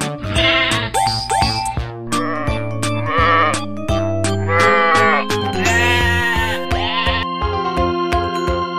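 Sheep bleating several times, a series of separate wavering calls each under a second long, over light background music.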